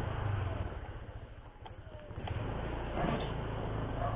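Motorcycle engine running at low speed, easing off about a second in and picking up again about two seconds in.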